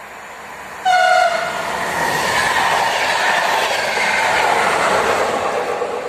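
A passing train sounds one short horn blast about a second in, its pitch dropping slightly as it ends, likely as a greeting to the trackside filmer. Then the train rushes past close by with loud wheel and rail noise.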